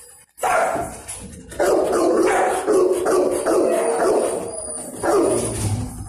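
Dogs barking in a kennel: a run of loud, overlapping barks starts about half a second in and goes on, with a brief break near the end.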